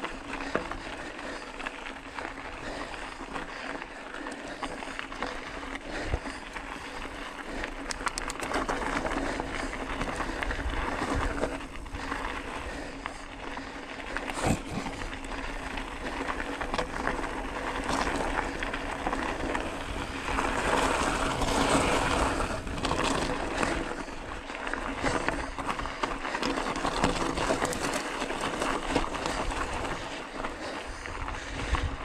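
Bicycle tyres crunching over a rocky gravel dirt track, with the bike rattling and knocking over bumps and stones. It is louder and rougher for a few seconds a little past the middle.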